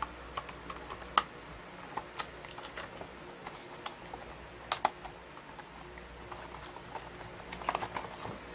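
Scattered light clicks and taps of small metal fishing-reel parts being handled: the silver Gomexus power knobs and the reel handle they fit. The clicks come irregularly, with a sharp double click near the middle and a small cluster near the end.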